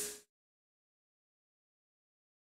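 Silence, except for the first quarter second, where a belt sander sanding a plastic pipe is heard before it cuts off abruptly.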